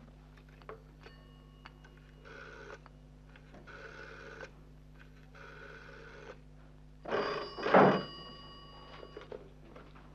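Desk dial telephone being dialled, the dial whirring back three times, then an old telephone bell rings loudly with a double ring about seven seconds in.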